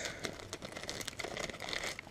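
Clear plastic bait packaging crinkling and crackling in irregular bursts as a bass jig is handled and pulled from it.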